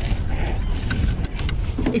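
A vehicle running with a steady low rumble, with a few sharp clicks or rattles about halfway through.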